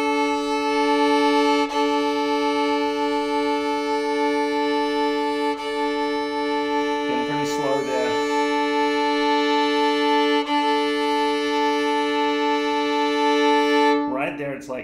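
Violin's open D and A strings bowed together as a long sustained fifth, with a bow change about every four seconds. The D string is slightly out of tune, so the interval beats with a wavering 'wah-wah' pulse instead of sounding calm.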